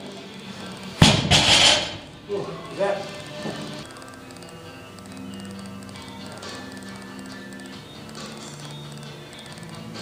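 Loaded Olympic barbell with bumper plates dropped onto the lifting platform about a second in: one heavy thud that rings briefly, then a few smaller knocks as it settles. Background music runs through the rest.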